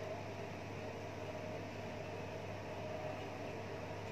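Steady background hum and hiss, unchanging, with no snips or clicks from the shears.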